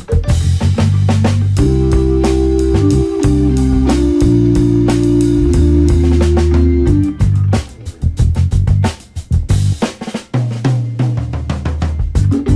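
Background music with a drum kit beat and bass, with sustained notes held through the middle; the music thins out and drops in and out over the last few seconds.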